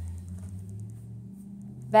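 A low, steady engine drone from a vehicle running outside, its pitch stepping up slightly a little past halfway.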